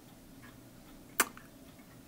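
A single sharp click from fine metal tweezers, a little after a second in.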